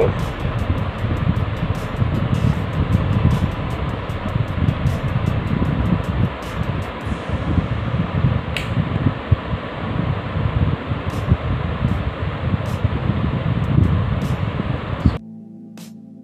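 Hands working on a laptop's plastic case, heard as a steady rumbling noise with many small clicks. It cuts off suddenly about a second before the end and music takes over.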